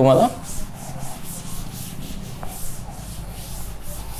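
A cloth wiping chalk off a chalkboard in quick back-and-forth strokes, about three a second.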